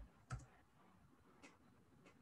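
Near silence, with two faint clicks from typing on a computer keyboard.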